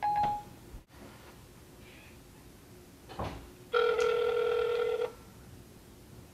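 A phone's ringing tone heard through its speaker as an outgoing call connects: one steady ring about a second and a half long, starting just before the middle, after a short electronic beep at the very start.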